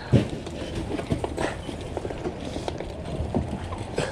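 Footsteps of a person walking on asphalt: a string of irregular short knocks and scuffs over a steady outdoor background hiss, with one sharper knock just after the start.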